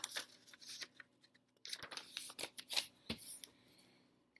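A sheet of paper rustling and crackling as it is handled and folded in half, in short spells with a pause about a second in.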